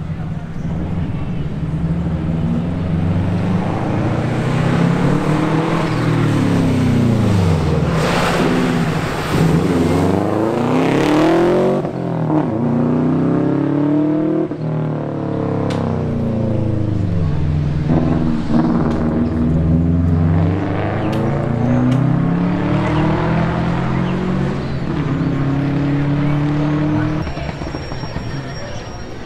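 Rally car engine revving hard. Its pitch repeatedly climbs and drops as it shifts gears and brakes for corners. A loud rush of noise comes in the middle.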